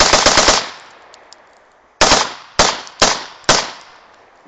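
Pistol fire: a rapid string of shots that stops about half a second in, then four single shots spaced about half a second apart in the second half.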